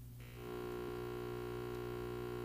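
A steady electronic drone of several held tones that comes in about a quarter of a second in and holds, over a low steady hum.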